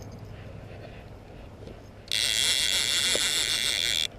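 A fishing reel being cranked fast, winding in line: a steady high-pitched whir that starts about halfway through and stops abruptly. The angler is reeling in to check a suspected bite.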